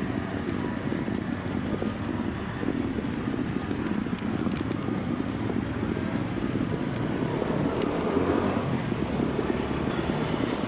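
Outdoor street noise with a steady low rumble of road traffic.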